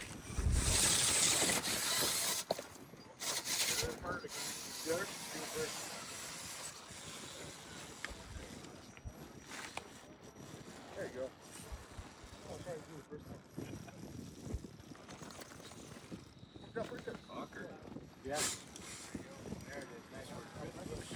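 Indistinct voices of people talking in the background. Loud rushing noise bursts come in the first few seconds and again briefly near the end.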